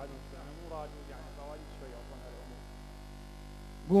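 Steady electrical mains hum on the hall's sound system, with faint indistinct voices in the first couple of seconds. A man's loud chanting voice breaks in at the very end.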